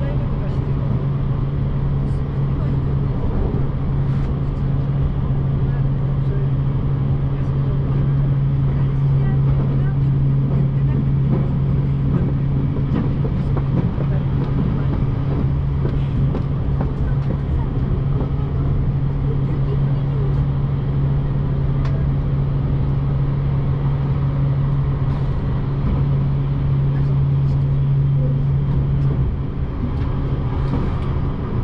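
Electric limited-express train, 383 series, heard from inside the passenger car while running at speed: a continuous rumble of wheels and track with a steady low hum that drops away near the end.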